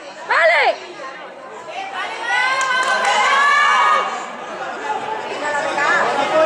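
Voices shouting across a football pitch: one short call about half a second in, then several voices shouting over one another for about two seconds in the middle.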